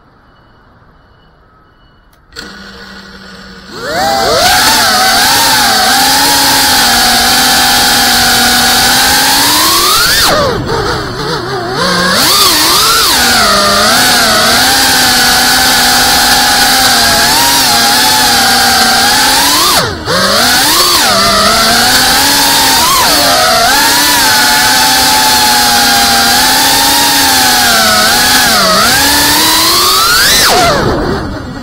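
GEPRC Cinelog 35 cinewoop FPV drone's motors and ducted propellers spinning up about two seconds in and then whining loudly, the pitch rising and falling as the throttle changes. The whine sags briefly around ten seconds in and cuts out for a moment near twenty seconds before spinning back up.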